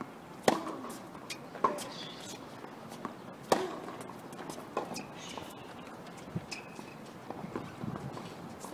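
Tennis rally: sharp pocks of rackets striking the ball back and forth, about one every second or so, with a few fainter ball bounces. The hits thin out after about five seconds.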